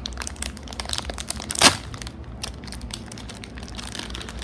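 Plastic wrapper of a Tsum Tsum mystery pack crinkling and crackling as fingers work inside it to pull the toy out, with one louder crackle about one and a half seconds in.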